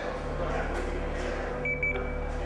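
A steady low hum, with two short high beeps near the end.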